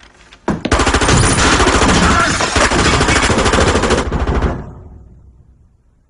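A long burst of automatic gunfire: rapid shots start about half a second in, run on for about three and a half seconds, then stop and the echo dies away.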